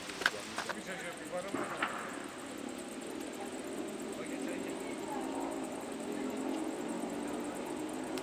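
Indistinct background chatter of voices, with a few sharp clicks in the first two seconds.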